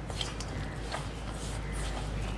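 Hands kneading crumbly flour-and-egg dough in a stainless steel bowl: soft squishing and rubbing, with a few faint ticks, over a low steady hum.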